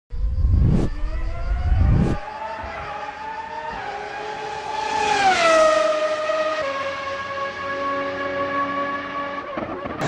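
Race car engine sound effect: a heavy rumble with two sharp cracks about a second apart, then an engine note climbing slowly in pitch and falling as the car passes by about five seconds in, holding steady before cutting off just before the end.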